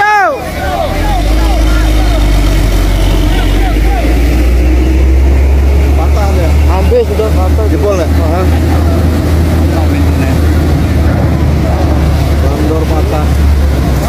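A steady low engine rumble from a truck and ferry at the loading ramp, with scattered shouting voices over it.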